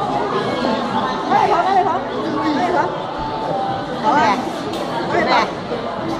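Indistinct chatter of several people talking, with a few louder snatches of a voice standing out.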